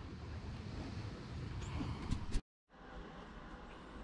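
Steady, low outdoor background noise with wind on the microphone. About two and a half seconds in it drops out to dead silence for a moment, then gives way to quieter room tone.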